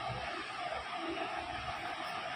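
Steady background hiss of room noise, with no distinct sound events.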